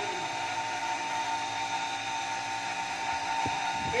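Steady electric motor whine with a fixed high tone, like a running pump or compressor, and a brief knock near the end.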